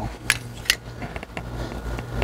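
A few light, sharp clicks and taps from a hand-held plastic template and spray can being handled and set against a rifle, two clear ones in the first second and fainter ones after, over a low steady hum.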